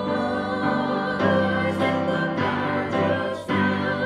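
A small mixed group of women's and men's voices singing together in a church, holding long notes with vibrato and moving to a new note about every second.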